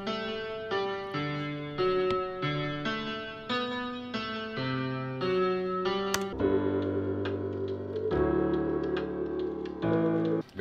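Software piano melody from a beat-production session played back: single notes about two a second, the first melody the beat was built on. About six seconds in, sustained chords over a deep bass come in.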